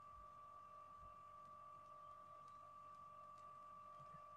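Near silence: faint room tone with a steady, faint high whine.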